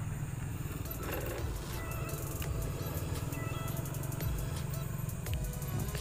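Quiet background music over a steady low hum, with faint scraping and light ticks from a putty knife spreading glue along a wooden guitar neck.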